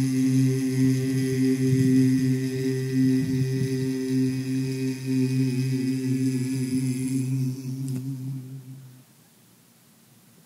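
Male a cappella group holding a long wordless chord that stays steady, then fades and stops about nine seconds in.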